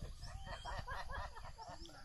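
Chickens clucking in short, overlapping calls over a steady low rumble.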